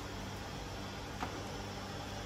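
Steady room noise: a soft hiss with a low hum underneath, and one faint click a little over a second in.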